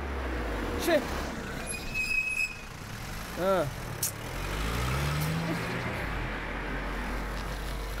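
A passenger van driving past on the road, heard as a steady low engine rumble, with a short shout about a second in and another about three and a half seconds in.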